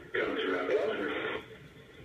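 A person's voice coming through a conference-call speakerphone, thin and phone-like, lasting about a second. It then drops away.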